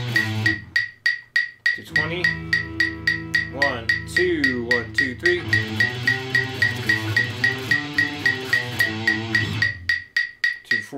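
Electric guitar played along with a metronome clicking steadily about four times a second. The guitar breaks off briefly near the start, then comes back with ringing notes and a few sliding pitches around the middle before carrying on in time with the click.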